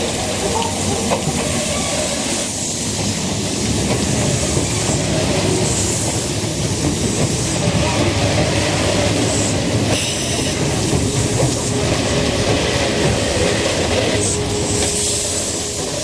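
Kintetsu 26000 series electric express train running past close by as it slows into the station: steady wheel-on-rail rumble with some clacking over the rail joints. A steady tone comes in near the end as it slows.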